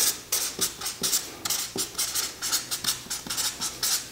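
Broad-tip black felt marker scratching across notebook paper while hand-lettering capital letters: a quick run of short strokes, about four a second.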